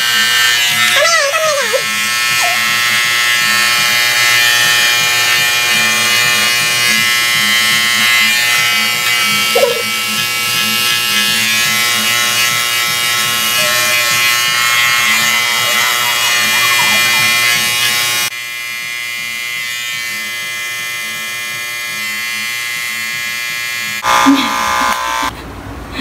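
Electric hair clippers buzzing steadily as they cut hair at the neck and sides of the head, with brief voices over the buzz. About eighteen seconds in, the buzz drops noticeably quieter.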